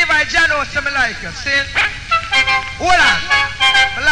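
Live recording of a reggae sound-system dance: a deejay's voice chanting in swooping, rising-and-falling pitch over the music, with held steady notes in the second half.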